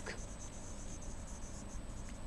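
Low room tone: a steady faint hiss with a high, rapid, faint pulsing over it.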